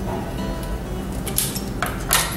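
Background music, with two short metallic clinks near the end.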